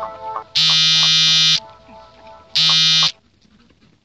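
A loud, steady buzzing tone sounds twice, first for about a second and then for about half a second.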